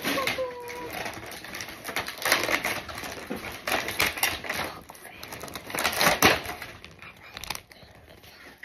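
Crackling, rustling and clicking of plastic toy packaging being handled and opened, an irregular run of quick sounds; a child's voice is heard briefly at the start.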